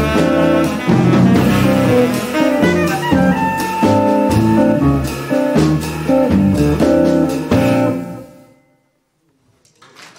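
Live jazz quartet of tenor saxophone, semi-hollow electric guitar, upright bass and drum kit playing the last bars of a tune. The band cuts off about eight seconds in, leaving a moment of silence, and applause is just starting at the very end.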